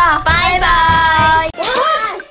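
A child's voice holding one long, high-pitched note for about a second, followed near the end by a shorter wavering vocal sound.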